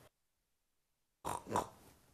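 A woman doing a pig impression: two short snorts in quick succession, about a second and a quarter in, after a second of silence.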